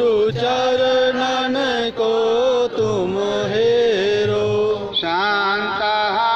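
A man chanting a devotional prayer into a microphone, in long held notes that bend and slide between pitches, with short breaks between phrases.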